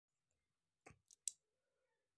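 A few short, faint clicks over near silence, about a second in, the last one the loudest.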